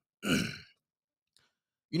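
A man clears his throat once, briefly, followed by a silent pause before his speech resumes at the very end.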